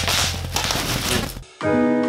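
Plastic packing wrap being handled, a steady rustling noise over a low hum, that cuts off abruptly about one and a half seconds in. Solo piano music follows.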